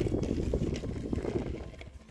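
Small plastic toy stroller wheels rolling and rattling over rough wooden bench planks, a dense low clatter that eases off near the end.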